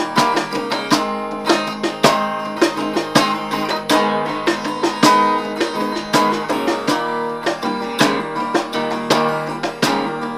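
Acoustic guitar played in a steady groove, with a cajon beating out regular hits about twice a second.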